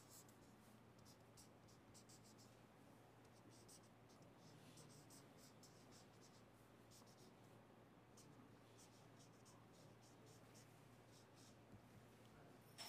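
Felt-tip marker scratching faintly across paper in many short strokes while Chinese characters are written, over a low steady hum.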